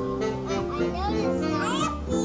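A small jazz group playing live, with sustained bass and chord notes. Young children's high voices call out over the music, most strongly in the second half.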